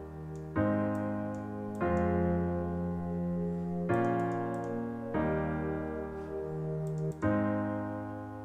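Software piano playing slow sustained chords with a soft synth pad beneath them, a new chord struck about every one and a half seconds.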